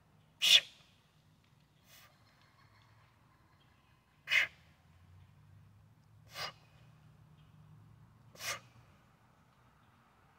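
A man's sharp, forceful breaths from the strain of one-arm heavy kettlebell presses: four hard exhalations about two seconds apart, the first the loudest, with a fainter breath between the first two.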